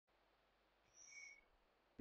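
Near silence, broken by one faint, short, high-pitched steady tone about a second in.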